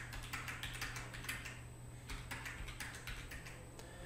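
Fairly quiet keystrokes on a computer keyboard, short irregular runs of key presses as numbers are typed in and entered, with a short lull about halfway through. A faint steady low hum runs underneath.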